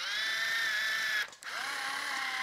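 Black & Decker AutoTape electric tape measure's small geared motor whirring as it drives the blade out. It runs in two bursts, about a second each with a short break between. The unit has just been repaired and is working again.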